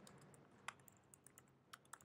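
Faint computer keyboard keystrokes: several separate key clicks at an uneven pace as code is typed.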